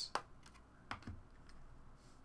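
A few faint, separate clicks and taps of hard plastic card holders and cards being handled on a tabletop, the clearest just after the start and about a second in.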